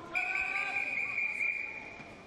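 A whistle giving one long, steady blast of nearly two seconds at a swimming pool.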